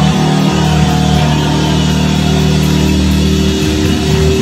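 Loud electric guitar through an amplifier, a held note ringing out steadily while the guitar is lifted overhead, then broken up by fresh playing near the end.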